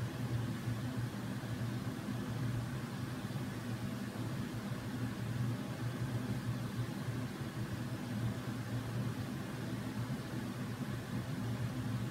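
Steady low hum under a faint hiss: unchanging background room noise, with no distinct events.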